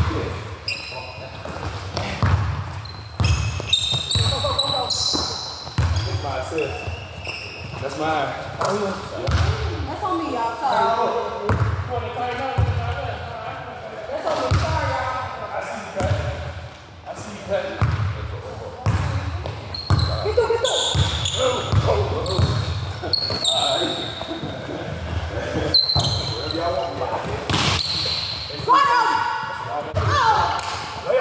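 A basketball bouncing repeatedly on the court during half-court play, with players' voices calling out in the background.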